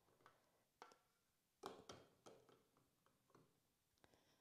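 Near silence with about half a dozen faint light clicks, the clearest about one and a half seconds in: a plastic funnel and a stainless-steel mixing bowl touching drinking glasses as thin, runny rice pudding is poured.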